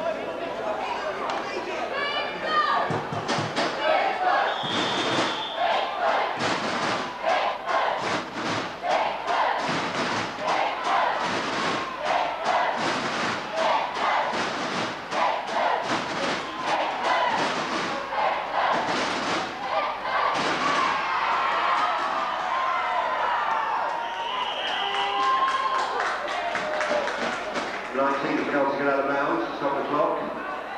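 Players and spectators shouting and cheering, with a long run of sharp claps or thuds through the middle. A short high whistle sounds about five seconds in and again about 25 seconds in.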